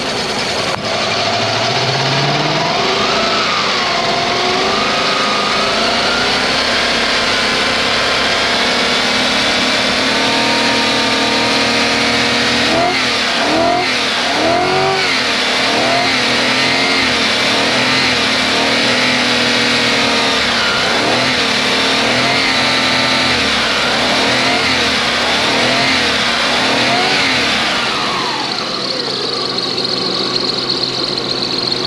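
Lexus SC400's 1UZ-FE V8 engine running on a freshly fitted fuel pump. Its speed rises and falls repeatedly from about twelve seconds in.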